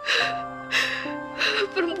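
A woman crying, with three sharp gasping sobs, over background music of held low notes.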